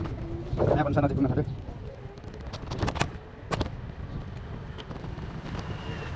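City street ambience heard while walking on a sidewalk: a steady low traffic rumble. About a second in there is a short pitched call, the loudest part, and a few sharp clicks come around the three-second mark.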